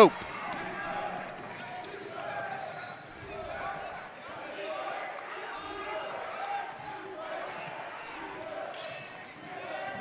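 Basketball being dribbled on a hardwood gym floor during live play, under a steady murmur of voices from the crowd and players.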